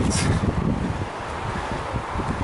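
Wind buffeting the camera's microphone: an uneven low rumble over a steady noise haze.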